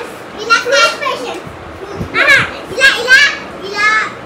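Young children's high-pitched voices, calling out and chattering in several short bursts.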